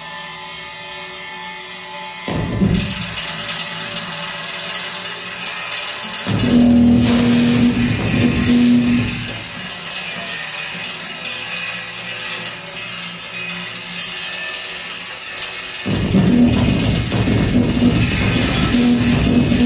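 Live improvised music for percussion and electronics: a dense, noisy electronic texture over struck and rubbed percussion. A louder layer with a steady low tone comes in about six seconds in, drops away about three seconds later and returns near the end.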